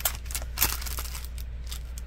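Handling of a small plastic kitchen timer: a few light clicks and taps, the sharpest about two-thirds of a second in, over a low steady hum.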